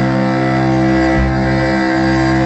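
Several cellos playing long held chords together in a loud live concert, heard from the audience. The lowest notes shift a couple of times in the second half.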